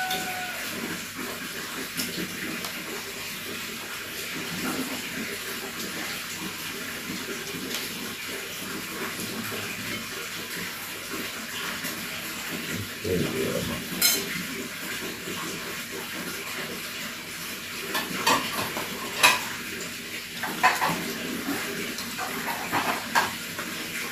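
Tableware clinking during a shared meal: plastic bowls, plates and a metal pot knocked by utensils and hands in scattered clinks, most of them in the later part, over a steady hiss.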